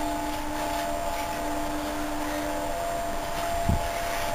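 Steady mechanical hum of a running fan or small machine in a workshop, with a few steady tones in it; the lowest tone stops about two-thirds of the way through. A short soft knock near the end.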